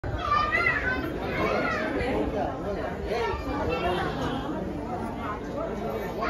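Chatter of several people talking at once, with some high-pitched voices in the first second or so.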